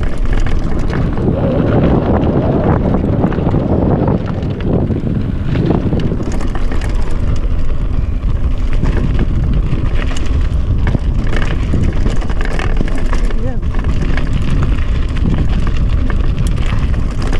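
Mountain bike running fast down a dirt and gravel trail: a steady rumble of wind buffeting the camera microphone and tyres rolling over the ground, with frequent small rattles and clicks from the bike over the bumps.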